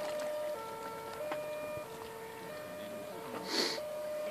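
A German-style two-tone siren (Martinshorn) alternating evenly between a high and a low note, each held about two-thirds of a second, from a radio-controlled model fire boat. A brief hiss comes near the end.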